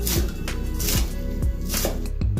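Chef's knife slicing through a vegetable and striking a cutting board, three strokes about a second apart, over background music.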